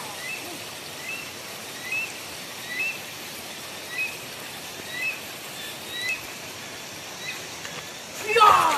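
A bird repeating a short, high chirping call about once a second, over a steady rushing hiss of running water.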